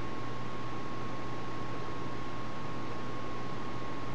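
Steady background hiss with a faint constant high tone and a low hum: the recording's own noise floor, with no other event.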